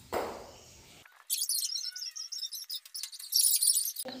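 A soft rustle that fades within the first half second. Then, from about a second in, irregular high-pitched chirping with no low sound under it at all.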